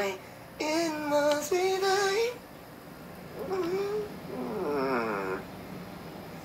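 A voice singing held, sliding notes for about two seconds, heard through a phone's speaker from a livestream. A few seconds later comes a quieter, wavering vocal sound.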